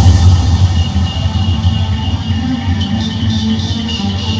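Electronic trap music played loud through a Sony GPX88 mini hi-fi system, dominated by heavy bass with percussion over it.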